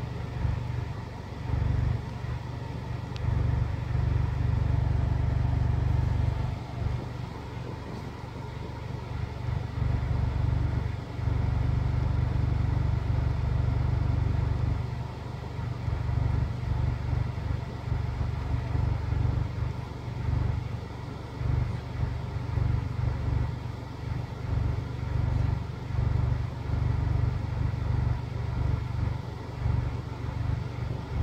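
2018 Honda Accord engine idling: a low rumble that swells and dips unevenly in loudness.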